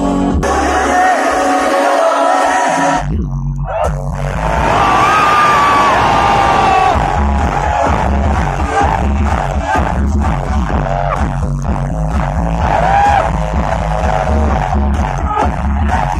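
Loud electronic dance music played live over a festival sound system, heard from within the crowd, which cheers along. The bass drops out early on and the music breaks briefly about three seconds in, then heavy pulsing bass comes back in about halfway through.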